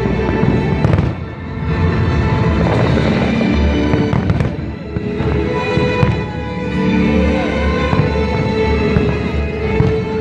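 Aerial fireworks bursting, with sharp bangs about one, four and six seconds in, over music that plays throughout.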